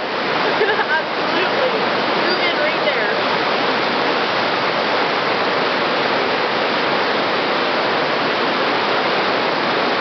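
Roaring water of river rapids rushing steadily over rocks. A faint voice is heard briefly in the first three seconds.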